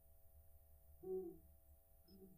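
Near silence with a faint steady hum; about a second in, a person's voice makes one short, low sound.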